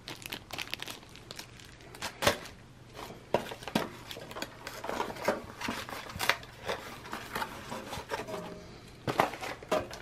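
Clear plastic packaging bag, holding plastic clipper guards, crinkling as it is handled. Irregular crackles and light taps run throughout.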